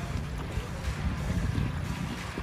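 Wind buffeting the microphone in an uneven low rumble, over the rush of fast river water around a drifting boat.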